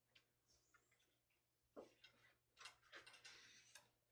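Near silence, with faint paper rustling and light clicks from a large hardcover picture-book page being turned, starting about two seconds in.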